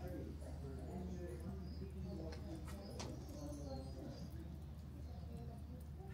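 Faint, indistinct conversation, with short high bird chirps now and then over a steady low hum.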